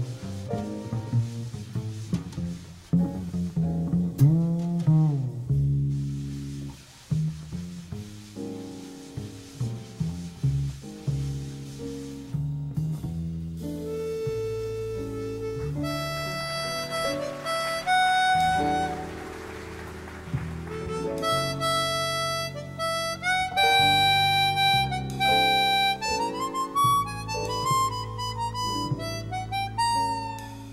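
A jazz quartet plays a slow ballad. A plucked double bass carries the first half, then a chromatic harmonica comes in around the middle with long, held melody notes.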